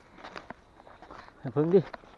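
Footsteps crunching through dry fallen leaves on a forest floor: several short, quiet steps, with a man's voice cutting in near the end.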